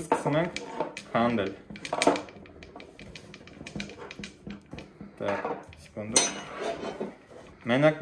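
Metal parts of a rifle clicking and clinking as the muzzle end is handled, a run of small quick clicks with a brief scrape about six seconds in.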